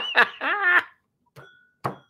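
A man laughing, a run of short chuckles that stops a little under a second in. Then two faint clicks, each with a brief ring, about half a second apart.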